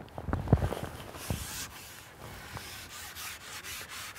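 A carbon fishing pole being handled and shipped back while a hooked fish is played: a few low knocks in the first second, then quick repeated rubbing strokes, about four a second.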